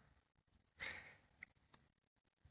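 Near silence: room tone, with one faint breath a little under a second in.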